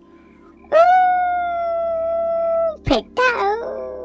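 Two long howls: the first rises quickly and holds a high steady note for about two seconds, then drops off; the second starts with a waver and settles on a lower held note.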